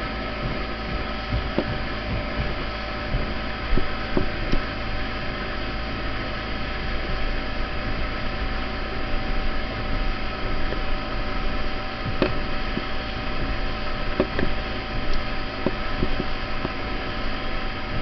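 Tow boat's engine running steadily under way, heard from on board as a constant hum over a rush of noise, with a few brief knocks.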